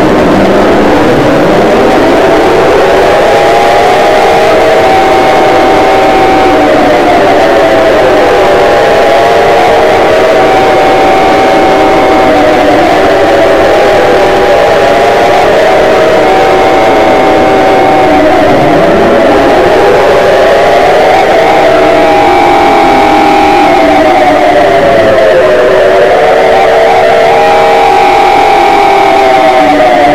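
Mock emergency alarm: several siren tones rise and fall out of step with one another over steady held tones. It is very loud and distorted.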